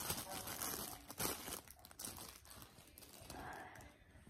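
Rustling and crinkling close to the microphone, with scattered small clicks, busiest in the first second or so: handling noise as the phone and the sleeve beside it are moved.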